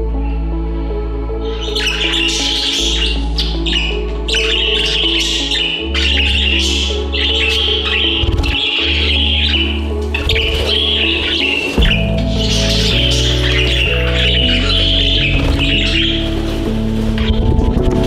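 A flock of budgies chirping and chattering in rapid short bursts, starting about a second and a half in and thinning out near the end, over background music with slow sustained low notes.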